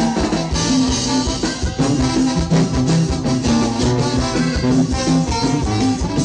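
A live Mexican band playing an upbeat dance number with a steady drum beat.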